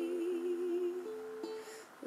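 Ukulele picking single notes under a woman's voice holding a long, slightly wavering note that ends about halfway through. The plucked ukulele notes then ring on and fade away toward the end.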